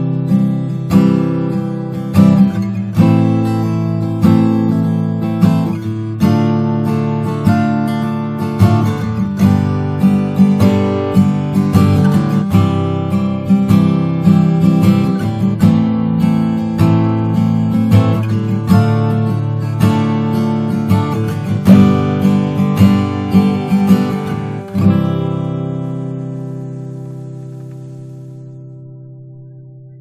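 Seagull S6 CW acoustic-electric guitar with a solid cedar top, strung with John Pearse pure nickel wound strings, played fingerstyle: a flowing piece of plucked melody notes and chords over a bass line. About 25 seconds in it lands on a final chord that is left to ring and fade out slowly.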